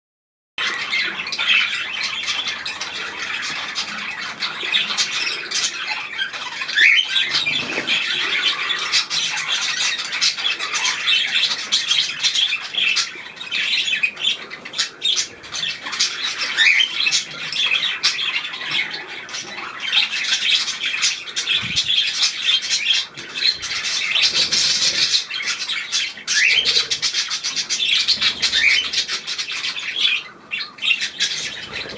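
Small aviary birds chattering and chirping, many calls overlapping without pause after a start just over half a second in.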